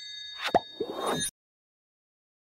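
Subscribe-button overlay sound effect: a bell chime ringing on, with quick cartoon-like pops about half a second and one second in, then the sound cuts off suddenly.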